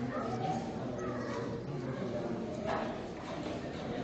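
Low voices talking in a room, with one short knock a little past halfway.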